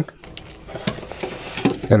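A few faint small metallic clicks and scrapes as a coax tester's threaded remote terminator is unscrewed from the coupler on an F-connector and another remote is screwed on in its place.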